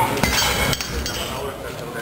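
Rolling Thunder grip handle and its loaded weight plates set down on the floor, with a few metallic clinks and clanks within the first second as the plates and handle settle on the loading pin.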